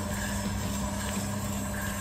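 Proaster drum sample roaster running with a steady, even hum, just after first crack with the heat being turned down.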